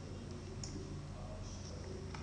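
A single faint click about half a second in, over a steady low hum.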